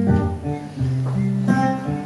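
Acoustic guitar picked and strummed, chords changing about every half second to a second.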